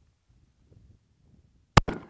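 A Smith & Wesson 1911 E-Series pistol firing one .45 ACP round near the end, a single sharp shot after a second and a half of near quiet.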